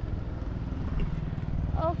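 A vehicle engine running with a steady low drone.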